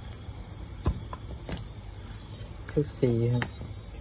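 Crickets chirping steadily in a high, finely pulsing trill, with a few light clicks about a second in as a small metal carburettor is handled; a man starts talking near the end.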